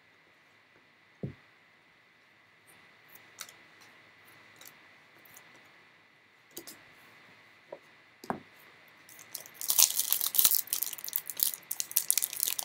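Trading cards handled by hand, with scattered soft clicks and a dull thump about a second in. From near the end, loud crinkling of a foil Panini Elite basketball card pack wrapper being picked up and opened.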